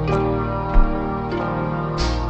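Intro jingle music: held keyboard chords over a deep bass, the chord changing twice, with a short low thump partway through.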